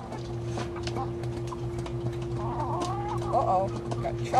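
Domestic hens clucking in a short run of low, wavering calls past the middle, with scattered sharp ticks of beaks pecking at feed throughout.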